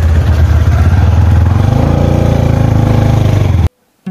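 Motorcycle engine running loud and steady while riding a dirt track, the revs rising and falling around the middle. The sound cuts off suddenly just before the end.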